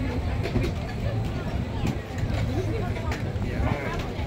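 Busy street-food market ambience: many people talking in the background over a steady low rumble, with a few short clicks and knocks.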